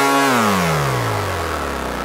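Electronic dance music: a buzzy synthesizer tone holds, then slides steadily down in pitch from about a quarter second in, a pitch-drop effect that winds the track down.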